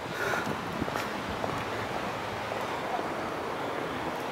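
Steady rush of wind on the microphone of a handheld phone camera, with a few faint knocks from handling.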